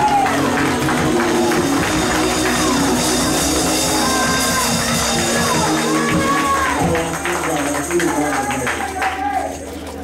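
Church band playing upbeat gospel music: sustained keyboard chords over busy drumming, with voices calling out over it. The drums drop out about seven seconds in, leaving the held chords and a voice.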